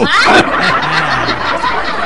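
Several people laughing loudly together, a sustained burst of overlapping laughter.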